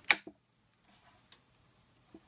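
Steel bar clamp being tightened by its screw handle: a sharp click just at the start, then a single faint tick a little over a second later.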